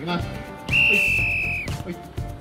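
A whistle blown once in a single steady high note lasting about a second, signalling the start of a one-on-one dribble duel.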